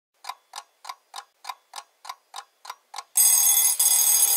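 Alarm clock sound effect: about three ticks a second, ten in all, then the alarm bell ringing loudly from about three seconds in.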